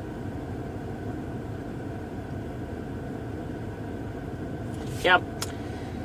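Steady low hum inside a parked car's cabin, its engine idling.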